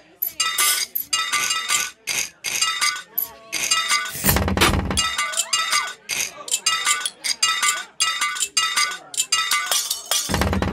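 Live looped keyboard synth music: a bright, chiming, glass-like pattern of short repeated notes, with a deep bass swell about four seconds in.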